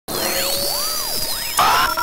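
Electronic intro sting: synthetic tones sweeping up and down in arcs over a steady hiss, with a louder burst of noise about one and a half seconds in.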